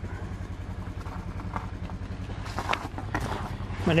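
An engine idling steadily nearby, a low rumble of fast, even pulses that cuts off near the end.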